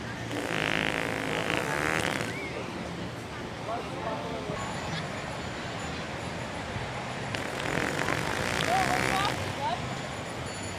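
Two drawn-out fake fart noises from a prank, each lasting about two seconds: one just after the start and one near the end.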